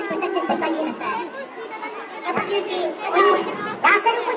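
A group of children chattering and calling out, with speech over them.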